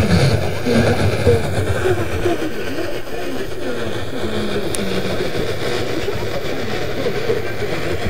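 A GE Superadio's speaker playing a weak long-distance AM signal on 1700 kHz: faint, barely intelligible talk buried in steady static and hiss.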